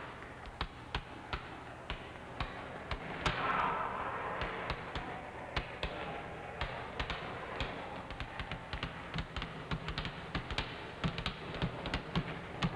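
Several basketballs being dribbled on a hardwood gym floor: a stream of irregular bounces that grows busier in the second half. A short swell of noise comes about three seconds in.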